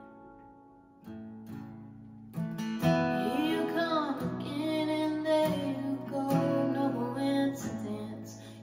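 Acoustic guitar strummed: a chord rings out and fades, new strums come in about one and two seconds in, and then a woman's singing voice joins the fuller strumming about three seconds in.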